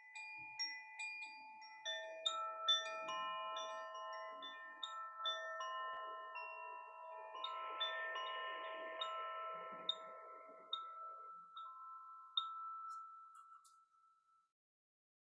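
Handheld wooden tube wind chime being rocked, its rods striking in a tinkling run of overlapping, sustained ringing tones. The strikes thin out and the ringing fades near the end.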